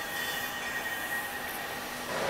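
Steady mechanical running noise of workshop machinery, with a faint, high, steady whine running through it.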